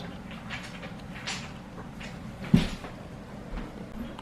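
Light handling noise of plastic parts and a circuit board on a digital piano's keyboard, with a few small clicks and one sharp click about two and a half seconds in.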